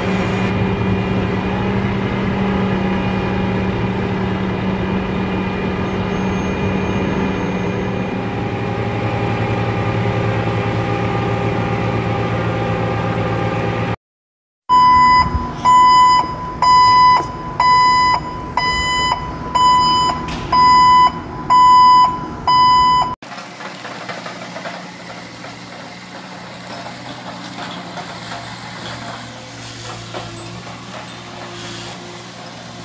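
A heavy machine's engine running steadily. After a brief cut, a reversing alarm beeps about once a second, some eight times, over engine noise. Then a quieter engine runs on.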